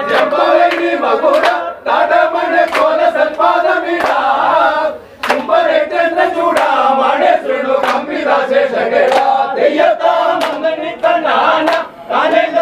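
A group of men singing a devotional chant together, clapping their hands in a steady beat about twice a second, with brief breaks between lines.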